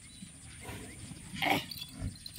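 A male water buffalo gives one short, breathy snort about one and a half seconds in, with its head down in the soil.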